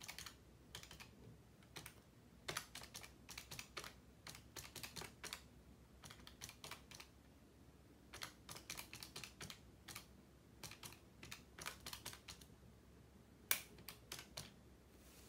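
Pencil writing on paper: faint, short scratchy strokes in quick irregular clusters with brief pauses between them, and one sharper tap near the end.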